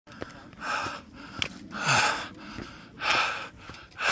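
A person breathing heavily close to the microphone: three loud breaths, roughly a second and a quarter apart.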